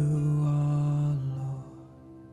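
Slow worship song: a singer holds one long low note over a soft backing, and the note fades out about a second and a half in, leaving the quiet backing.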